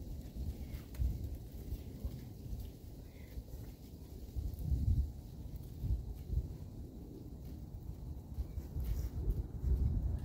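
Uneven low rumble of wind buffeting the microphone, swelling a little about halfway through, with no clear event.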